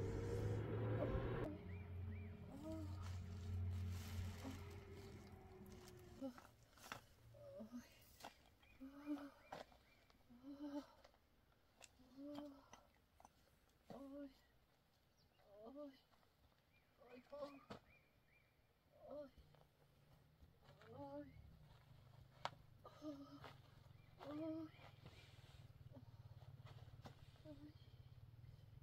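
Faint short calls from an animal, repeating about once a second, each a brief pitched note.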